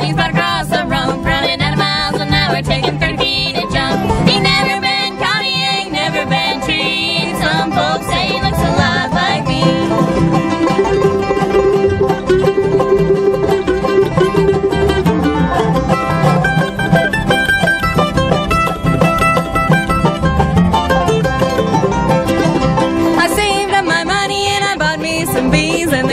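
Live bluegrass band playing a fast instrumental break on banjo, dobro, mandolin, acoustic guitar and upright bass. The lead changes about ten seconds in.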